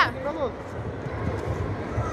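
A man's shout dies away in the first half-second, followed by faint background voices and a low rumble in a large sports hall.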